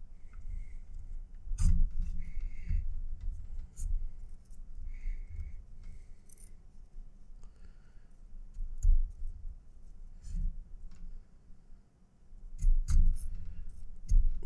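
Paracord being tightened and pulled through a woven knot with a pointed metal knotter's tool: scattered clicks of the metal tool, cord rubbing, a few short squeaks, and low bumps from handling.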